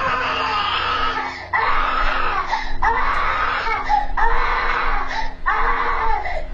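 A toddler screaming and crying: a string of about five long, piercing wails, each about a second long, one after another with only brief breaks for breath.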